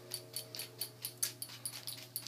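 German Shepherd puppy eating raw chicken from a stainless-steel bowl: a quick run of sharp clicks and ticks, about four a second.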